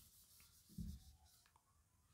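Faint swishing of a whiteboard eraser wiping marker ink off the board, with one soft low thump about a second in.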